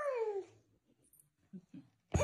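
A toddler girl's short, high-pitched wail that slides down in pitch over about half a second.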